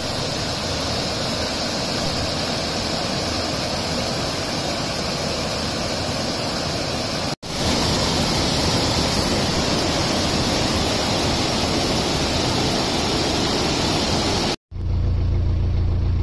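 Water pouring and spraying through a canal lock gate, a steady rushing that comes back louder after a short break about halfway through. Near the end it gives way to the low rumble of the narrowboat's engine.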